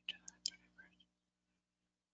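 Faint whispered speech for about a second over a conference-call line, then silence.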